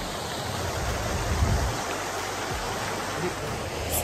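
Outdoor fountain's water splashing as a steady rushing hiss, with low rumbles on the microphone about a second in.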